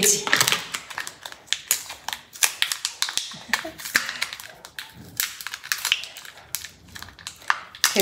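A small plastic packet holding a sterile piercing earring, handled and worked open by fingers: a quick, irregular run of small crinkles and clicks.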